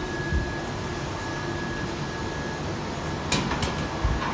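Steady mechanical hum and hiss, with a faint high steady tone that stops about two and a half seconds in. Near the end, a few sharp metallic clicks and knocks as a steel frame is handled and set onto a metal electrical cabinet.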